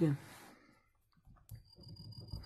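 A single sharp click as a pen comes down on a paper notebook about a second and a half in, followed by faint scratching of the pen starting to write. The tail of a spoken 'okay' is heard at the very start.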